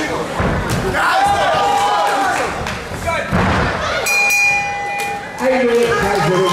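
Kickboxing kicks and strikes thudding on bodies amid shouting voices, then about four seconds in a steady buzzer sounds for about a second, the signal that ends the round.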